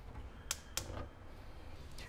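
Two short, light clicks about a third of a second apart, made while handling the skillet of ground beef on the gas cooktop, over a faint hiss.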